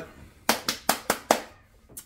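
A quick run of sharp hand claps over about a second, applauding.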